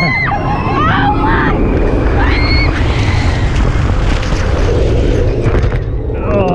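Steel roller coaster train running fast along the track, a heavy steady rush of wind on the microphone with the train's low rumble. Riders scream briefly near the start and again about two seconds in.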